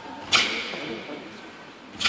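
Sharp whip-like snap of a taekwon-do uniform (dobok) as a fast strike or block is thrown, about a third of a second in, with another starting right at the end.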